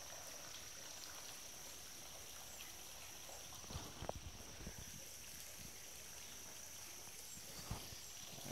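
Faint, steady trickle of a shallow spring-fed stream running over stones, under a thin steady high tone. A few soft knocks come around the middle and once near the end.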